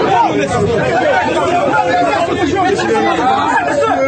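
A man speaking loudly and forcefully, with other voices chattering around him.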